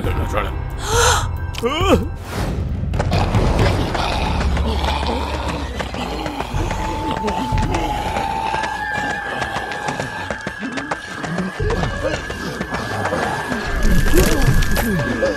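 Cartoon character voices over background music: short frightened gasps and whimpers in the first two seconds, then many overlapping low zombie groans. A held, wavering high tone in the music comes in a little past halfway.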